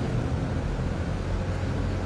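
Steady low background rumble with no speech.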